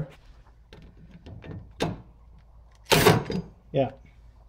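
A sharp knock about two seconds in, then a louder short clunk and clatter about three seconds in: tools and blade hardware being handled under a mower deck.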